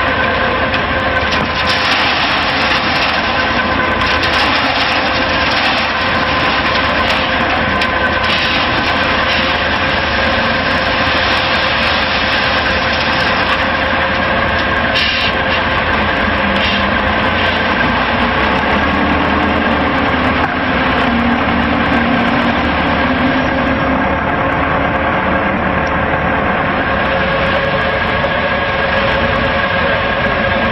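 Steady, loud drone of construction machinery running: the diesel engine of an ABT40 trailer concrete pump working alongside a drum concrete mixer. A fainter, wavering lower hum comes and goes in the second half.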